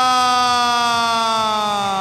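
A ring announcer's voice drawing out the last vowel of a wrestler's name in one long shout that slowly falls in pitch.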